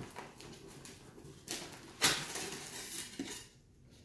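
A cardboard shipping box being opened and its foam insulation lid pulled out and set down: rustling and scraping with a few sharp knocks, the loudest about two seconds in.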